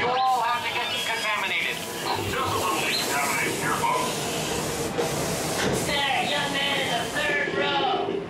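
Dark-ride show audio with animated character voices and effects, over a steady hiss that cuts off suddenly about seven seconds in.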